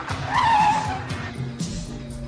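Car tyres squealing once for under a second as a car takes a bend, the squeal falling slightly in pitch, over background music.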